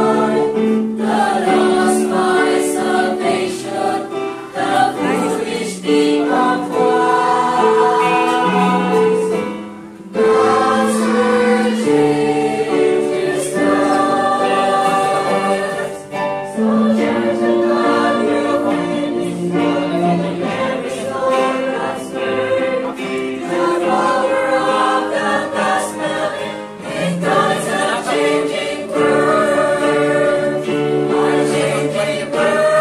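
Mixed church choir singing a hymn together in parts, with short breaks between phrases about ten and sixteen seconds in.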